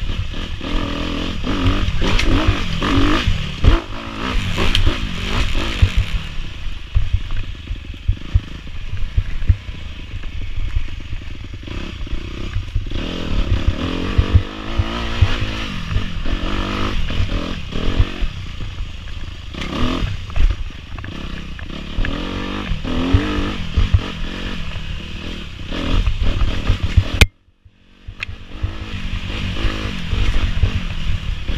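Dirt bike engine revving up and down as the bike is ridden over rough trail, with rattling and knocking from the bike over the ground. The sound cuts out suddenly for under a second near the end.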